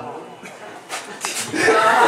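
Two sharp smacks about a second in, over low murmuring voices in a small room; a voice comes in near the end.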